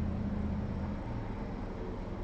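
Low, steady background hum with faint hiss and no speech, easing off about a second in.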